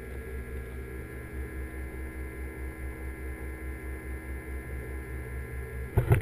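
Steady mechanical hum of aquarium water-circulation equipment (pump or powerhead) heard through the water by a submerged camera, with a low throb pulsing about five times a second. A brief knock comes right at the end.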